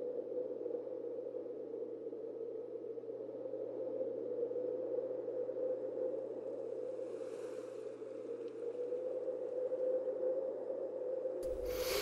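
A steady, low, droning ambience over a constant low hum. A faint whoosh comes in about seven seconds in, and a sudden loud burst of noise cuts in just before the end.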